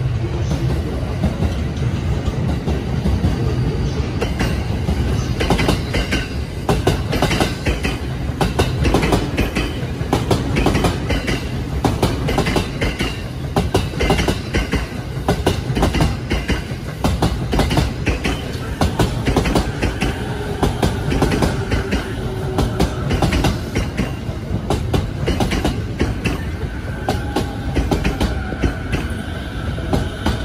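A blue-and-cream Sobu/Yokosuka Line electric commuter train pulls into the platform alongside, its wheels clattering over the rail joints. A faint high squeal comes in over the second half as it slows to a stop.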